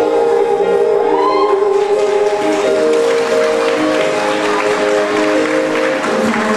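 Live ballad reaching its closing bars: a woman sings over sustained backing chords, and audience applause builds from about halfway through.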